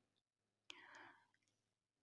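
Near silence, with one faint breath about three quarters of a second in.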